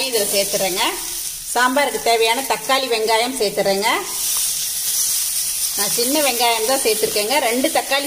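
Vegetables sizzling in hot oil in a pan as drumstick pieces, then chopped tomato and small onions, are tipped in on top of frying radish slices; the sizzle grows brighter about halfway through.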